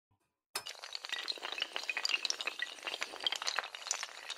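Sound effect of many small tiles toppling in a chain like dominoes: a dense run of quick clicks and clinks, starting about half a second in.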